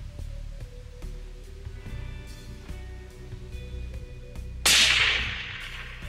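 A single hunting-rifle shot, sharp and loud, about three-quarters of the way through. Its report rings on and fades over about a second.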